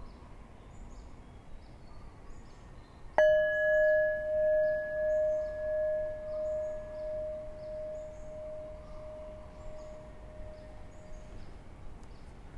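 A meditation bell struck once about three seconds in, ringing with a wavering, pulsing tone that fades away over about eight seconds; it marks the end of a silent sitting meditation.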